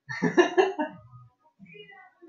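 A man's short burst of laughter: a few quick loud pulses in the first second, trailing off into fainter breathy chuckles.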